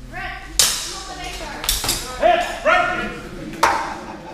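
Steel training swords clashing in a fencing exchange: three sharp metallic strikes with a brief ring, about half a second in, just under two seconds in and near the end, with short vocal calls between them.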